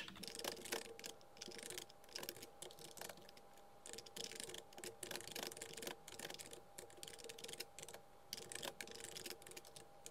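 Computer keyboard typing, sped up into a fast, continuous run of faint clicks.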